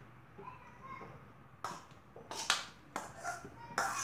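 Cooked okra tipped from a metal bowl into an aluminium pan: about five or six sharp knocks and clatters as the bowl taps against the pan, starting about halfway through.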